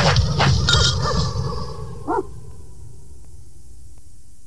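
Perreo mix dropping out over the first two seconds. About two seconds in comes a single short dog-bark sound effect, followed by a faint fading echo.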